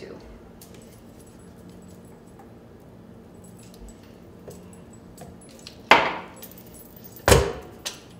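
Kitchenware knocking as a glass measuring cup and spatula are scraped and tapped against a stainless steel stand-mixer bowl, emptying out thick sweetened condensed milk. Faint scraping at first, then two sharp knocks about six and seven seconds in, each ringing briefly, the second heavier.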